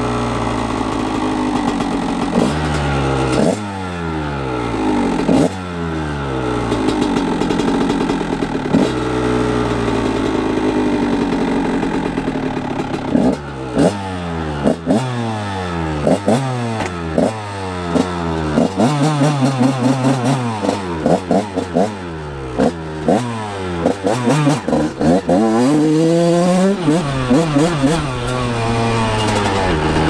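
1999 Honda CR125R two-stroke single-cylinder engine running and being revved in short throttle blips, a few at first, then many in quick succession through the second half. A longer rising rev comes near the end.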